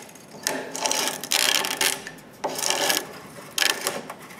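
Utility knife slicing off the excess screen mesh along the spline channel of a screen door frame, a rasping cut in four strokes.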